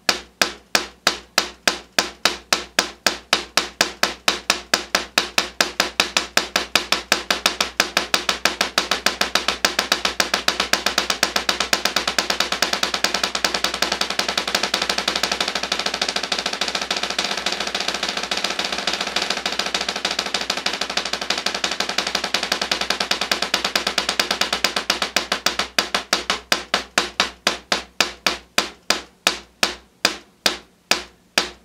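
Wooden drumsticks playing a double stroke roll (right, right, left, left) on a practice pad set on a snare drum. The roll starts as separate strokes, speeds up into an almost continuous roll through the middle, then slows back down to separate strokes near the end.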